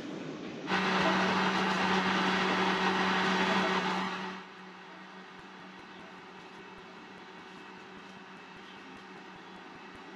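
An electric motor runs steadily for about three and a half seconds with a constant hum and whoosh, then cuts off suddenly. A faint steady hum stays under it afterwards.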